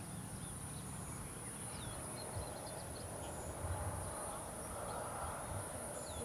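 Outdoor ambience dominated by a steady, high-pitched insect chorus, with a bird calling short falling whistles every few seconds over a low rumble.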